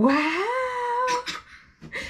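A toddler's long, excited squeal that rises in pitch and holds for about a second, followed by a couple of short cries.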